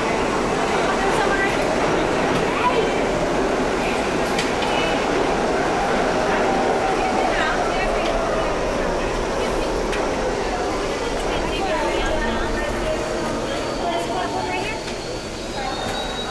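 New York City subway train running in the station: a steady rumble, with a motor whine that rises and falls through the middle.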